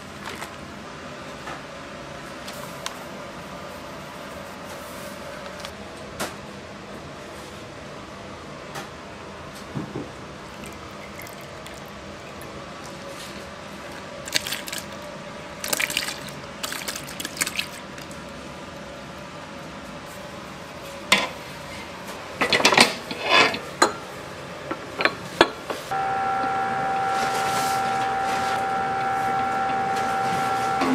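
Liquid poured into a steel stand-mixer bowl, with clattering in the bowl. About four seconds from the end, the stand mixer's motor starts and runs with a steady whine as its beater turns the dough.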